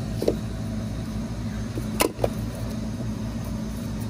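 Steady low hum of running ice-machine refrigeration equipment, with three sharp knocks or clicks, the loudest about two seconds in.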